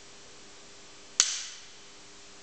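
A compressed-air 10-metre match air pistol fires a single shot about a second in: one sharp crack with a short echo that dies away within half a second.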